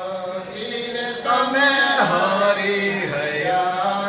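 Hindu devotional chant sung by a voice, with long held notes that slide in pitch. It grows louder about a second in.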